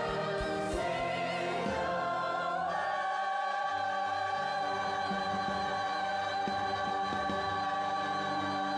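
Large mixed choir singing with orchestral accompaniment, moving into one long held chord about three seconds in.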